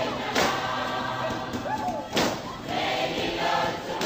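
A group of voices singing a Samoan dance song over music, with a sharp hit about every two seconds.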